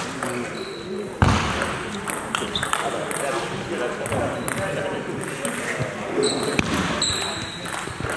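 Table tennis ball clicking off bats and table in a rally, ended by a loud sharp hit about a second in, then scattered lighter ball bounces. Voices murmur in the echoing hall behind.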